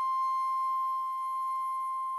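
Solo concert flute holding one long, steady high note, almost a pure tone with only faint overtones.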